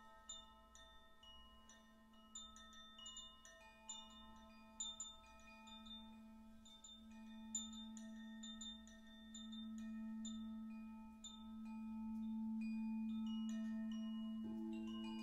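Frosted crystal singing bowl tuned to A3 being rimmed with a wand, its low steady tone swelling louder through the second half, under the light, random tinkling of a handheld harmony chime.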